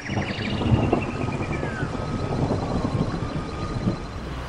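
Steady rush of a waterfall, a dense low wash of falling water, with a faint bird trill and whistles near the start.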